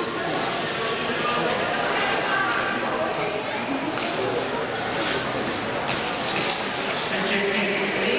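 Indistinct chatter and calling from spectators in an indoor ice rink's stands, with a few sharp clicks or claps in the second half.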